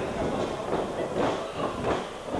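A few heavy thuds of a wrestler's body hitting the wrestling ring mat, with voices around.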